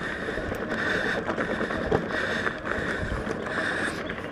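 Mountain bike being ridden on a dirt trail: rough tyre rumble and drivetrain rattle with wind on the microphone, and a higher hiss that swells and fades about once or twice a second.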